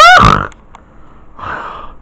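A short, loud nonverbal vocal sound from a person, a grunt-like exclamation whose pitch rises and then falls, right at the start. After it things go quiet, with only a faint brief noise about a second and a half in.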